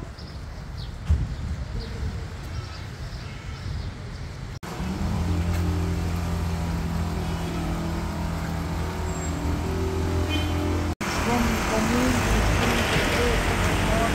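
Street sounds broken by two cuts: first a quieter stretch, then a steady low drone of a motor running, then an engine running amid louder traffic noise with people talking nearby.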